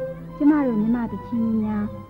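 Violin playing a Burmese melody with many sliding notes between held pitches, over steady low accompanying tones.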